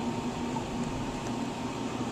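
Steady background hum and hiss of running machinery, with a faint high steady tone.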